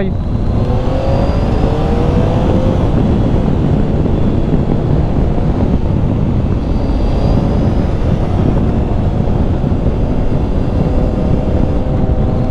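The 2013 Triumph Tiger 800's three-cylinder engine running under way, its note rising during the first couple of seconds as it pulls, under heavy wind noise on the microphone.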